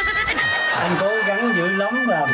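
A man laughing in quick, wavering pulses, with a steady high tone running behind it.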